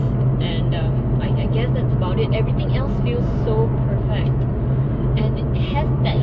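Aston Martin DB11 V8's 4.0-litre twin-turbo V8 heard from inside the cabin while cruising, holding a steady low drone with wind noise and road noise over it.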